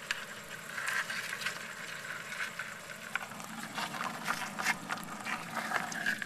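Irregular scratchy clicking and rustling, as live crabs' legs and claws scrabble against the sides of a plastic bucket.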